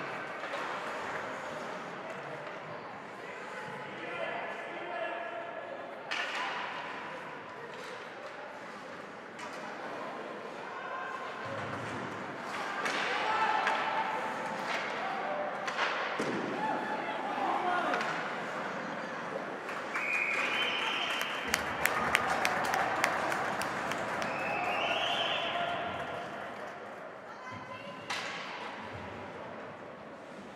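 Ice hockey play heard from the stands: sharp knocks of sticks and puck against the boards and glass, with a quick cluster of clicks about two-thirds through, under spectators' calling and shouting that grows louder in the second half.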